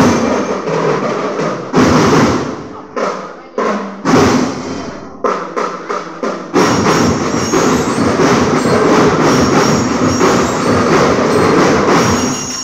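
School marching band drumming: a few sharp, loud hits that each die away in the first half, then dense, steady playing from about six and a half seconds in.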